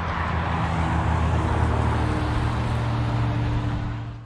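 Road traffic on the highway: a steady low engine drone with tyre and road noise.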